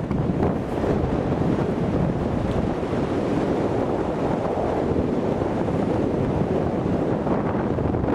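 Steady wind rushing over the microphone of a camera carried on a tandem paraglider in flight.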